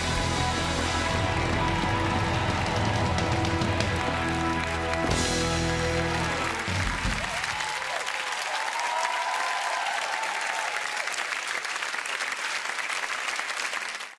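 A live band sustains a final chord that stops about seven seconds in, while a studio audience applauds; after the chord ends, the applause carries on alone.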